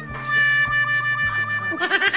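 Comic sound effect laid over background music: a long, high, slightly wavering held note, ending in a louder, quickly wavering cry near the end.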